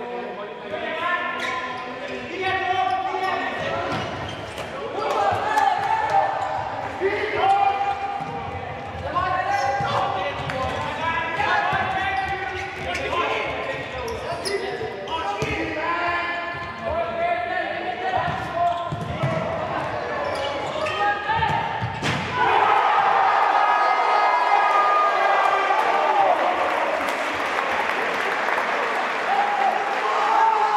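Futsal ball being kicked and bouncing on a wooden sports-hall court amid shouting voices. About two-thirds of the way through, a loud, sustained burst of cheering and shouting breaks out as a goal is celebrated.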